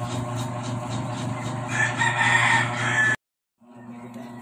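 A rooster crowing, starting a little under two seconds in and cut off abruptly just past three seconds, over a steady low hum.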